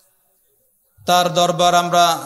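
About a second of near silence, then a man's voice starts a sermon in a melodic, chant-like delivery, holding long notes at a steady pitch, picked up by a microphone.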